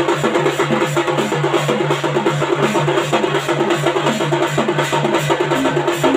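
Odia singha baja street drum band playing a fast, even beat of about five or six strokes a second, with drums and cymbals together, the beat changing pitch briefly near the end.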